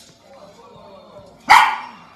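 A small fluffy white dog gives one short, sharp bark about one and a half seconds in while sparring with a cat.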